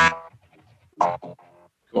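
Electronic instrument sounds played from a touch-sensitive controller: a pitched note fading quickly, then a second, shorter note about a second later.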